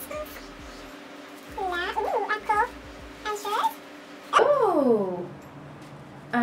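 Soft, brief voice sounds, then a loud, drawn-out vocal call about four and a half seconds in that falls steeply in pitch.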